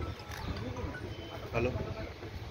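Several people talking at once in the background, no single voice clear, with a louder voice about one and a half seconds in.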